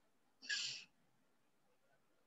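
A single short breathy puff of air about half a second in, lasting under half a second, against faint room tone.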